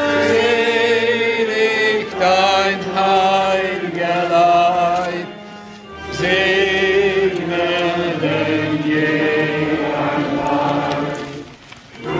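A choir singing a slow, sustained melody with vibrato, in two long phrases with a brief break about halfway through.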